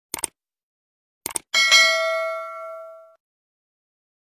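Subscribe-button animation sound effect: a quick double mouse click, then another double click about a second later, followed by a bright bell ding that rings and fades over about a second and a half.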